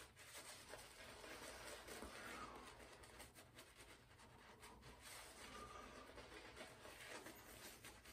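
Very faint swishing and rubbing of a silvertip badger shaving brush working soap lather over a stubbled face and chin, a soft, continuous scrubbing with small irregular flicks.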